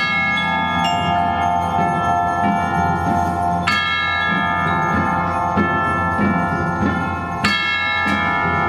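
Percussion ensemble playing slow music led by tubular bells: a ringing chord is struck near the start, again about halfway through and once more near the end, each left to ring on while further bell and mallet notes enter, over a steady low layer.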